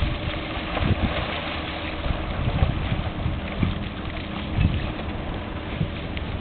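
Wind buffeting the microphone in irregular low thumps over a steady hiss of wind and water, with a faint steady low hum underneath.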